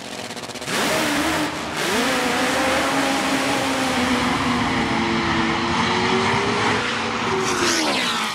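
Supercharged nitro-fuelled Top Fuel drag motorcycle launching hard from the start line about a second in and running flat out down the strip, loud and steady throughout the run. Near the end its pitch falls away and the sound fades as the bike reaches the far end of the track.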